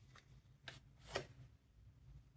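Tarot cards handled and drawn from the deck: three faint short card clicks about half a second apart, the last the loudest.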